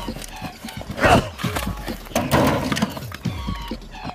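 Action-film soundtrack: music with a loud cry about a second in and another shorter, voice-like cry a little after two seconds.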